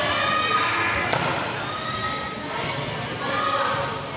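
Volleyball players and onlookers calling out during a rally, with two sharp thuds of the ball being struck about half a second and a second in.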